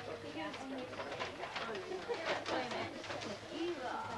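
Indistinct chatter of several people in a room, with short rustles like wrapping paper and a soft cooing sound.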